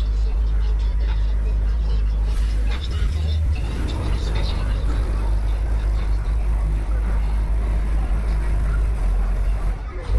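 Car engine running with a steady low rumble, with people talking around it.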